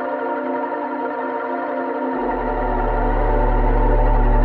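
Ambient electronic music: a sustained synthesizer drone of several steady, overlapping tones. About two seconds in, a deep bass note comes in underneath and the sound slowly swells.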